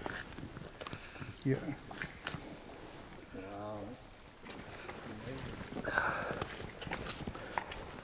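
Faint men's voices, with scattered footsteps and small clicks from people walking on the quarry floor.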